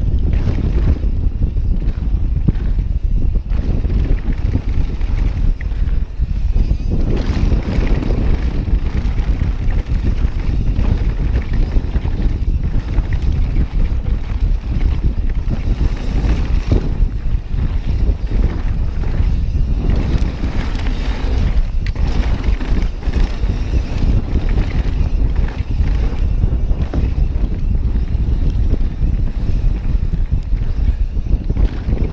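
Wind buffeting the camera microphone and tyres rumbling over a dirt trail as a mountain bike descends at speed, with constant uneven rattling from the rough ground.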